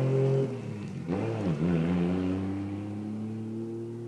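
Toyota Supra's engine just after a driveway skid. It is loud at first and drops off about half a second in, wavers up and down in pitch briefly, then settles into a steady note that slowly fades.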